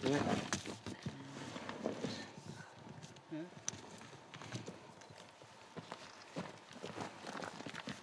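Footsteps and scuffs of boots on loose shale and dirt, with irregular small knocks of shifting stones.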